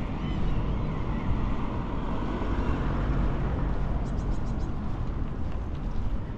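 City street ambience: a steady low rumble of road traffic, with a quick run of faint ticks about four seconds in.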